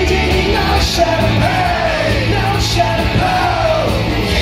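Live rock band playing: a male lead vocalist singing over drums and electric bass, with cymbal crashes, heard at full concert volume through the venue's sound system.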